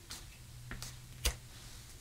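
Scissors snipping through fabric-covered piping cord: a few faint, short clicks, the loudest about a second and a quarter in.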